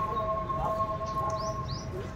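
Birds calling outdoors over a low background rumble: a long held whistle-like note, then two quick high chirps near the end.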